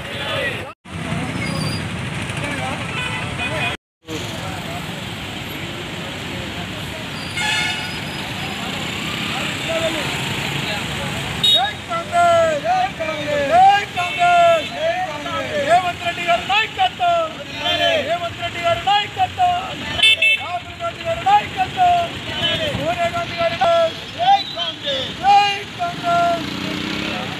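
Street traffic and a car engine, with a vehicle horn tooting, then from about a third of the way in a group of men shouting slogans in rhythmic, repeated chants that stay loud to the end.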